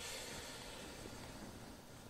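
A person's slow, quiet inhale as part of a breathing exercise: a faint, steady hiss of air.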